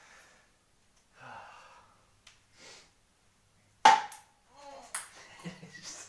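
A ping-pong ball striking the plastic cups and folding table: one sharp, loud knock with a short ring about four seconds in, then a few lighter bounces a second later.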